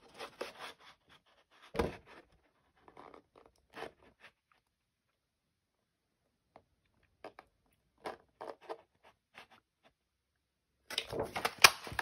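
Patterned paper rustling and sliding as it is worked into a handheld metal-and-plastic paper punch, with scattered small clicks and taps and a knock about two seconds in. Near the end the rustling thickens and ends in one sharp click as the punch cuts out a small flower.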